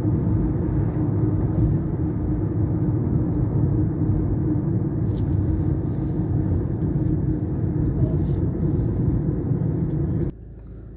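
Steady road and engine noise heard from inside a moving car, a low even rumble.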